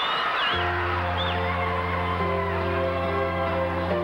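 A show band comes in about half a second in with a long held chord that shifts partway through, over crowd cheering and whistles that fade as the chord starts.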